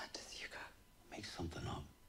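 Quiet TV drama dialogue, partly whispered: a short breathy phrase, then a brief voiced phrase about a second and a half in.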